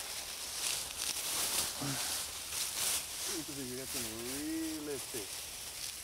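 Leafy climbing vines rustling and tearing as they are pulled by hand out of dense bushes, in irregular crackly bursts. A faint voice is heard briefly in the middle.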